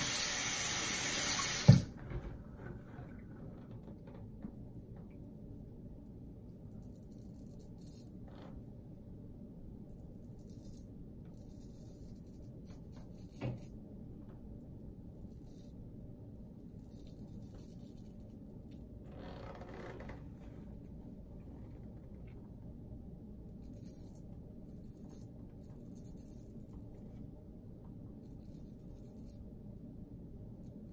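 A tap runs into the sink for under two seconds and stops with a sharp knock. After that, a shavette's blade scrapes through lather and stubble in short, faint strokes over a steady low hum.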